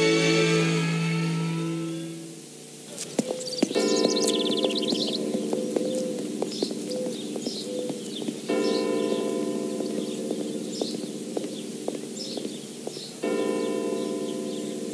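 Theme music fading out in the first couple of seconds, then a church bell struck three times, about five seconds apart, each stroke ringing on and slowly dying away.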